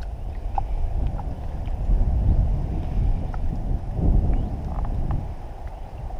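Wind rumbling unevenly on the microphone aboard a small wooden canoe, with a few light knocks and clicks scattered through.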